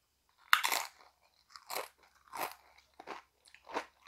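A tortilla chip bitten off with a sharp crunch about half a second in, the loudest sound here, then chewed with four more crunches at even spacing, roughly every two-thirds of a second.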